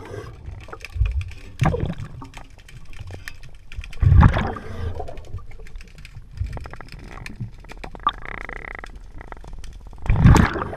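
Scuba diver breathing through a regulator underwater. Exhaled bubbles come in rumbling surges about a second in, near two seconds and, loudest, about four seconds in. There is a short steady hiss near the end and faint clicking throughout.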